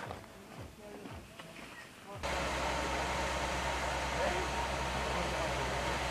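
Faint voices for about two seconds, then a sudden switch to a steady low mechanical hum with hiss that holds unchanged to the end.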